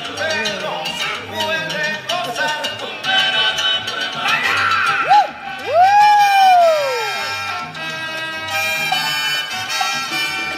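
Salsa music with a steady beat, played for the dancers and heard through the hall. About six seconds in, a loud sliding tone rises and then falls away, standing out over the music.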